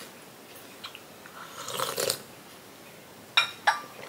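A sip of hot tea slurped from a ceramic teacup about two seconds in, then the cup clinking down onto its saucer, two short clicks near the end.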